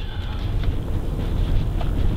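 Low, uneven rumble of a car's tyres and body going slowly over rough, patched asphalt, heard from inside the cabin.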